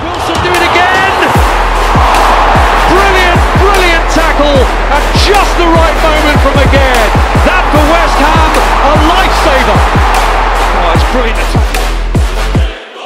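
Electronic music with a fast, steady kick drum and a held deep bass note, with a pitched part bending up and down above them.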